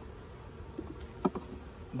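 Honeybees humming around an open hive, with a brief click of a metal hive tool against the wooden frames a little over a second in.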